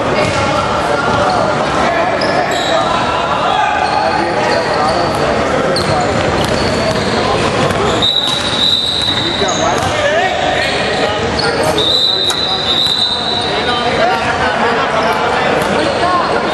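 Basketball game in a gymnasium: a dribbled ball bouncing on the hardwood and players' voices and calls ringing through the echoing hall, with a couple of high held tones about a second long, around the middle and again near three-quarters of the way through.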